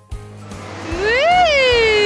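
A long, drawn-out vocal 'aww' that starts about a second in, rises in pitch, then slides slowly down and is held.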